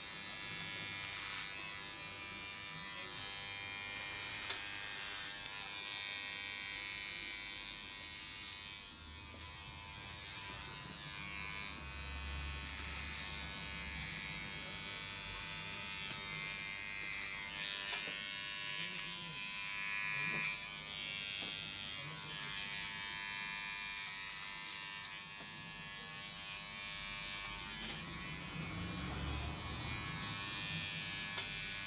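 Cordless electric hair clippers buzzing steadily. The high hiss swells and fades as the blades cut through hair.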